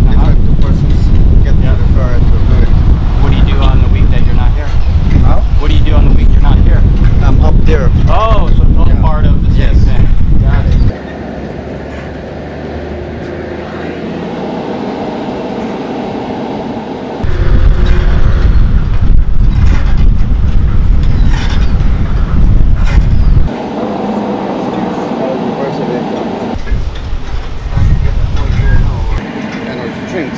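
Wind buffeting the microphone as a loud low rumble, cutting out abruptly about eleven seconds in, coming back, and cutting out again twice, with faint voices underneath.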